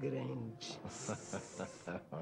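A person's voice speaking softly: a short voiced sound at the start, then a drawn-out hissing sibilant, then short broken voiced sounds.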